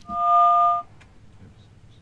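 A telephone line's dual-tone beep, two steady pitches sounding together for a little under a second, followed by a faint click, as the caller's phone line drops.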